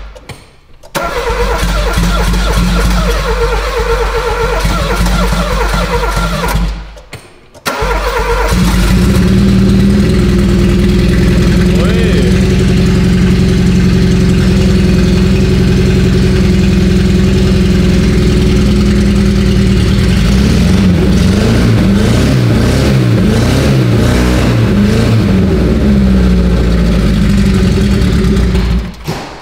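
A Citroën AX's small four-cylinder petrol engine catches about eight seconds in and then runs loud and steady. Its revs vary somewhat in the last several seconds. With its catalytic converter removed, it sounds like a little Porsche.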